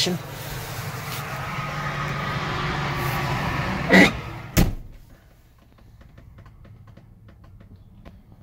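A steady mechanical hum, then a solid thump about four and a half seconds in as a truck's cab door shuts, after which it is much quieter, with only faint scattered ticks.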